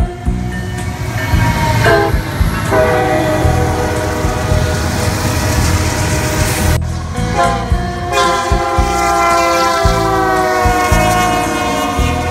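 Diesel freight locomotive horns blowing sustained chords over the heavy rumble of passing trains. The sound cuts suddenly about seven seconds in to another horn.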